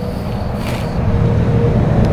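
A motor vehicle engine running: a steady low rumble with a faint constant hum above it, growing somewhat louder over the two seconds.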